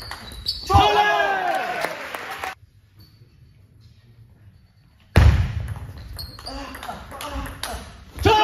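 Table tennis rally in a large hall: the celluloid ball clicking off bats and table, with a loud shout about a second in. The sound drops almost away for about three seconds in the middle, then returns with several sharp ball strikes in quick succession.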